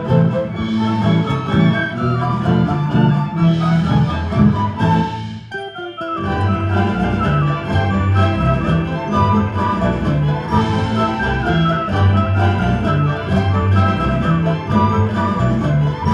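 Live orchestra playing, bowed strings together with woodwinds. The music thins to a brief lull about five and a half seconds in, then carries on at full level.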